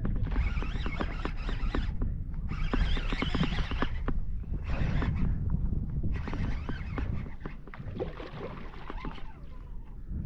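Wind buffeting the microphone over water lapping at a kayak, with stretches of rapid fine clicking and whirring from a fishing reel as a hooked redfish is fought.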